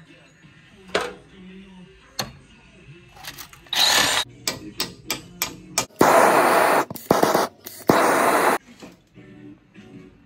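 Background music with sharp clicks, then several loud bursts of noise that start and stop abruptly in the second half.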